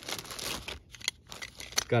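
Clear plastic bag crinkling as it is handled, followed by a few light clicks and taps in the second half.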